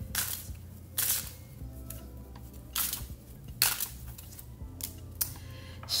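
Tarot cards being shuffled and handled, with several sharp card snaps at irregular intervals, over faint background music.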